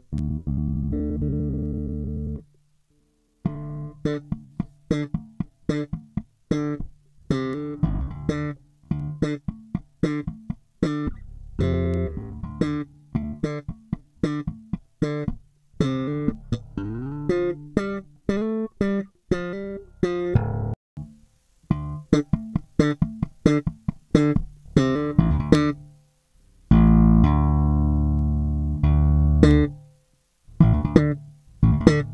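Four-string electric bass in drop-D tuning played slap style in D minor: a held low note, then a fast riff of thumb slaps and popped strings with sharp, clicky attacks, ending on a long sustained note near the end.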